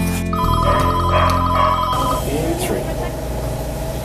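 An electronic telephone ringer trilling, a rapidly pulsing two-note tone, for about two seconds over the last held notes of background music, then room noise with faint voices.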